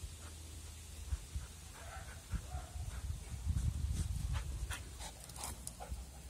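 Border Collie at play close by: a few short whining sounds about two seconds in, then a quick run of scuffs and clicks as she jumps about near the end.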